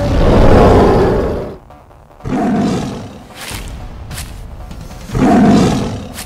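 Big-cat roars for an animated American lion and sabre-toothed Smilodon: one long, loud roar at the start, then two shorter roars about two and five seconds in, over background music.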